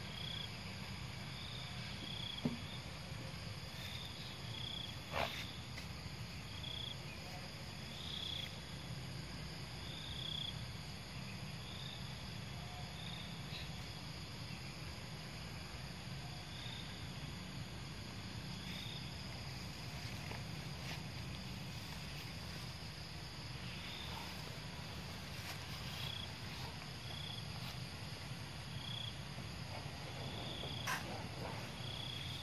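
Outdoor ambience: short high-pitched chirps of an insect repeat every second or two over a low steady rumble, with a couple of sharp clicks in the first few seconds.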